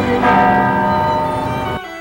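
Bells ringing, many tones sounding together and sustaining, cut off abruptly near the end.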